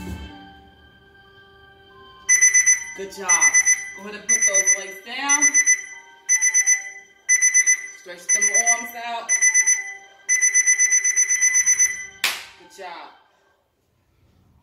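Electronic workout-timer alarm beeping in rapid groups of about four pulses roughly once a second, then a longer run of beeps near the end, marking the end of a timed exercise interval. A voice is heard between the beeps.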